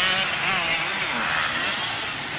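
Enduro motorcycle engines running on a dirt course, their pitch rising and falling as the riders work the throttle.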